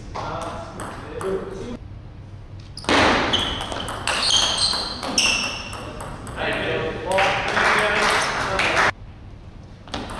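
Table tennis ball struck or bounced a few times, short high clear pings, between points of a match. Voices and a loud burst of crowd noise from the spectators come in between.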